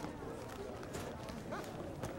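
School hallway ambience: an indistinct murmur of children's voices with scattered short clicks and knocks.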